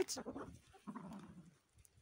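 Feral cat meowing: one rising meow right at the start, then only faint, low sounds for the rest.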